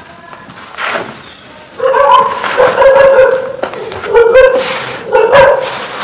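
A dog whining and yipping in a run of high, pitched cries from about two seconds in. Under the cries, dry sand-cement mix crunches softly as it is crumbled by hand into wet mud.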